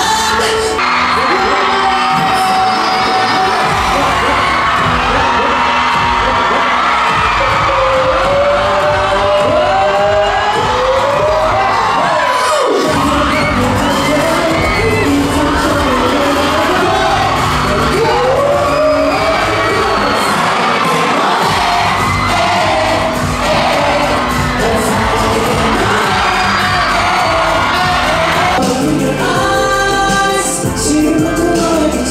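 A K-pop boy band singing live into microphones over a pop backing track, with the audience cheering. The music cuts to a different song about halfway through.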